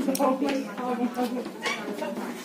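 Voices of several people talking as they climb a stairway.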